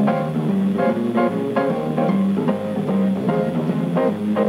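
Instrumental music from an AM radio broadcast, played through a table radio: plucked string notes at an even pace over a stepping bass line.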